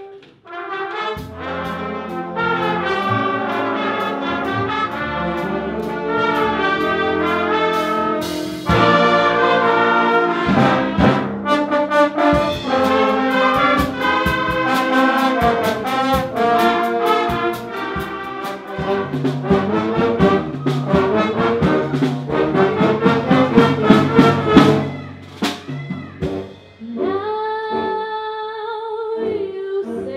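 A school band plays a loud up-tempo piece led by trumpets and trombones, with drum hits. The piece ends about 25 seconds in, and a couple of seconds later a quieter passage of held notes begins.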